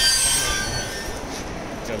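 A brief, loud, high-pitched metallic squeal of several tones at once, fading within about half a second, over a steady busy background.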